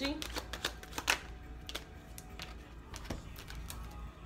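Tarot cards being shuffled and drawn by hand: a quick run of card-edge clicks in the first second or so, then scattered single flicks.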